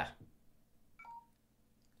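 One short, faint electronic beep about a second in, a few steady pitches sounding together like a phone keypad tone.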